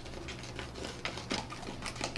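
Small plastic spoon stirring and scraping a thick, butter-like candy paste in a plastic tray, giving a few faint light clicks and scrapes.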